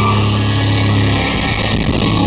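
Heavy metal band playing live, with distorted electric guitar and bass holding low droning notes that shift about a second in, heard loud from the crowd.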